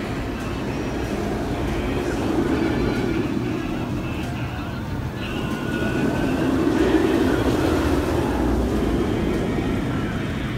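Banshee steel inverted roller coaster train running through its loops overhead: a steady rumbling roar that swells twice, once about two seconds in and again, loudest, around seven seconds in.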